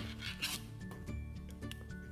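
Soft background music with a low line that steps in pitch, under light scratchy handling noise and small clicks from hands working the knitting yarn and picking up a metal crochet hook.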